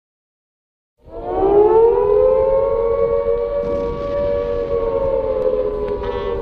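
Air-raid siren wail opening a pop song. After about a second of silence it winds up in pitch, then holds a steady wail.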